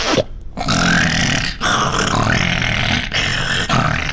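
Cartoon character's loud, rough, raspy yell, open-mouthed, broken into three long pushes with short breaks between them.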